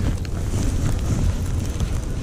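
Wind buffeting the microphone, heard as a steady low rumble.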